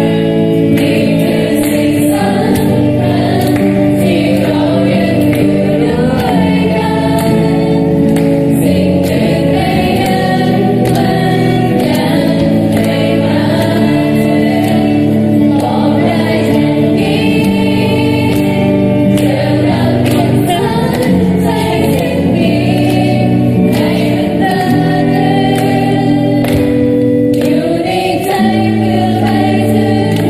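A group of voices singing a slow song together, accompanied by an electric guitar. The notes are long and held, and the singing carries on without a break.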